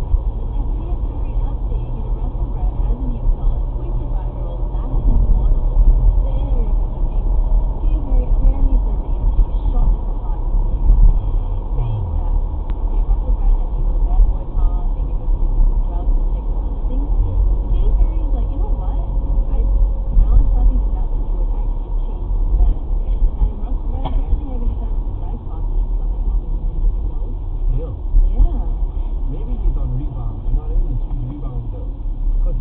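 Steady low road and engine rumble inside a moving car, heard through a dashcam's built-in microphone, with indistinct voices faintly under it.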